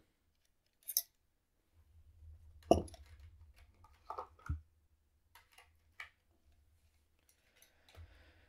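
A USB drive being handled and plugged into a computer port: a few faint, scattered clicks and knocks over a low rumble from handling, the loudest knock a little under three seconds in.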